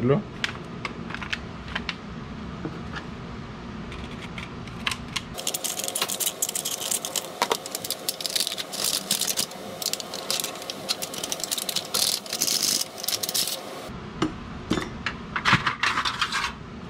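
Stainless-steel heat-treating foil crinkling and crackling as gloved hands unfold a packet around a just-hardened knife blade. The crackles come thickest through the middle stretch.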